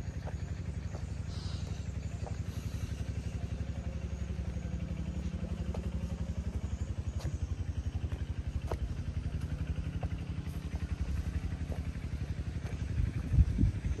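Diesel engine of earthmoving or land-filling machinery running steadily with an even low throb, with a few light clicks and a couple of bumps near the end.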